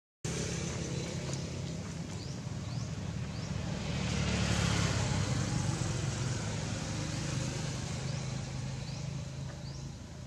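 A motor vehicle going past, its engine and tyre noise swelling to a peak around the middle and then easing off. Faint short rising chirps sound every second or so.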